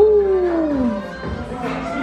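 A single howl-like call that swoops up sharply and then slides slowly down in pitch over about a second, over background music.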